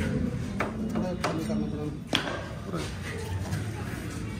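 Three sharp metallic clicks, roughly a second apart, the last one loudest, from tools and a motorcycle's exhaust pipe being worked loose and handled, over people talking in the background.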